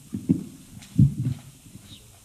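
Microphone handling noise: a handful of dull, low thumps picked up by a stand-mounted microphone as it is gripped and adjusted, the loudest about a second in.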